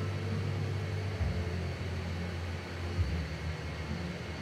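Room noise: a low, steady hum with a faint hiss and no music or voice.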